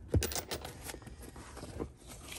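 Canvas tool bag full of sockets being turned over and handled: a soft thump just after the start, then rustling with a few light clicks, and one more click near the end.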